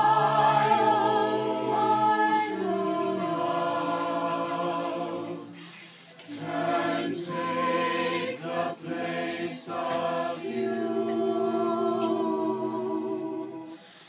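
A small group of high school carolers singing a cappella in harmony, several voices holding long notes together, with a short break between phrases about six seconds in.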